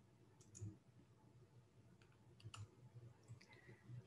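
Near silence with a few faint computer mouse clicks, the clearest about half a second and two and a half seconds in, as the presentation slide is advanced.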